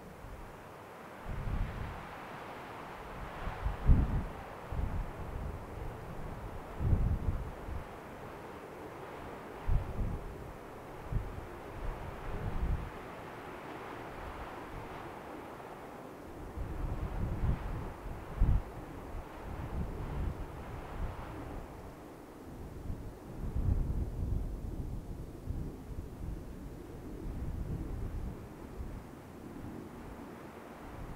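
Gusty wind buffeting the microphone in irregular low rumbles, over a rushing wind sound that swells and fades.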